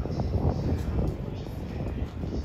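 Train departing on the move: the Kode 165 railcar's nose-suspended traction motors giving a steady low growl, with irregular knocks of wheels over the track.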